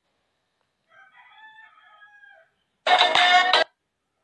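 A faint, drawn-out pitched sound for about a second and a half, then a short loud snatch of a TikTok sound clip, under a second long, played as the app's countdown timer runs out.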